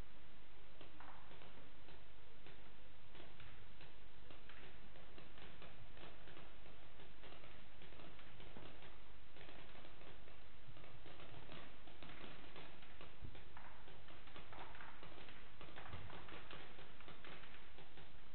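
Faint, irregular clicks and pops over a steady background hiss: paintball markers being test-fired.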